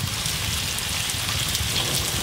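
Beef and carrots in plenty of oil sizzling steadily in a frying pan as raw rice is spooned in on top for plov.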